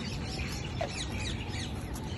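Birds chirping: many short, falling chirps, several a second, over a steady low rumble.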